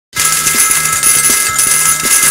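Loud pachinko parlor din: a dense metallic clatter of steel balls with steady ringing electronic bell tones and jingle music from the machines, starting abruptly.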